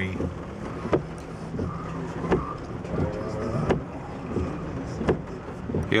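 Car cabin while driving slowly in rain: a steady low engine and road hum, with a sharp click about every second and a half.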